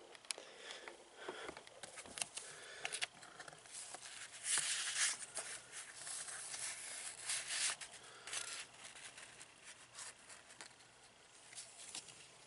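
Paper rustling and crinkling as a small notebook and loose handwritten pages are handled and leafed through, a string of soft irregular rustles and clicks that is loudest about halfway through.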